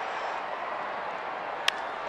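Steady ballpark crowd murmur, then a single sharp crack of a bat meeting a pitched baseball near the end.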